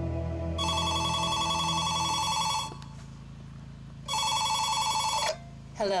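A telephone ringing twice, the first ring about two seconds long and the second shorter, over a low ambient music drone that fades out during the first ring.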